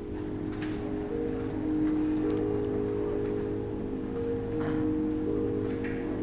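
Background music of long held notes that shift in pitch from time to time.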